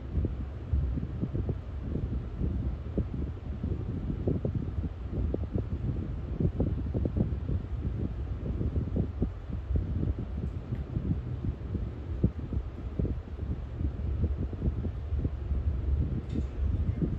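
Tugboat's diesel engines running, a low steady rumble with an irregular flutter, heard inside the wheelhouse.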